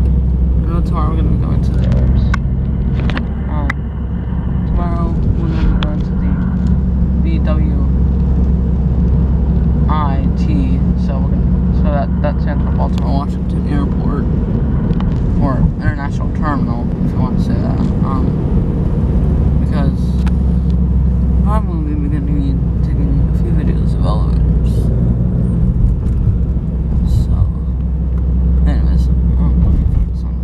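Steady low engine and road rumble heard from inside a moving car's cabin, with a voice speaking indistinctly at times over it.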